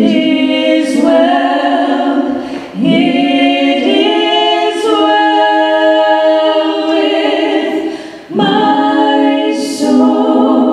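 Three women singing together in harmony into microphones, unaccompanied, with long held notes. There are brief breaks between phrases about three seconds in and again near the end.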